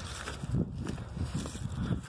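Wind buffeting a phone microphone outdoors, with an irregular low rumble and scuffs from footsteps on grass and handling of the phone.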